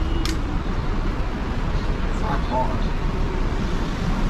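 Steady low rumble of city street traffic, with one sharp click just after the start and faint voices around the middle.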